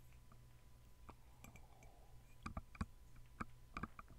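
Near silence: a low steady hum with a few soft, short clicks, more of them in the second half.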